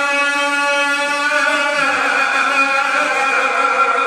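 Two men's voices chanting a devotional recitation together, holding one long note through the microphones.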